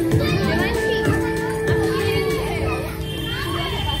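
Young children's voices chattering and calling out over music with long held notes.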